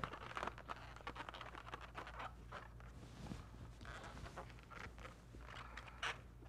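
Faint, irregular rubbing and squeaks of an inflated latex twisting balloon being handled and adjusted by hand.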